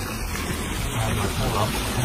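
Steady rush of water from an above-ground pool's return jet, driven by the Intex cartridge filter pump, stirring the pool surface.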